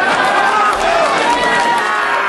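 Cage-side crowd shouting and yelling, many voices overlapping at once, as the referee stops a mixed martial arts bout.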